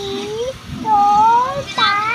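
A toddler's high-pitched, drawn-out sing-song voice: a few long held syllables whose pitch glides up and down.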